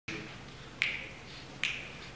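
Two crisp finger snaps about 0.8 s apart, ringing briefly in the hall: a tempo count-off just before an a cappella group starts singing.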